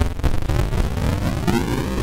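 A music loop played through the TriTik Krush bitcrusher plugin while its downsample (sample rate reduction) amount is swept, giving a gritty, aliased sound with a whine that rises steadily in pitch.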